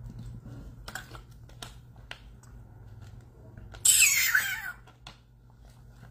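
A person drinking water from a plastic bottle: a few faint swallowing clicks, then a short loud rush of noise about four seconds in.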